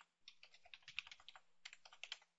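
Faint computer keyboard typing: a quick run of about a dozen keystrokes as a command is typed.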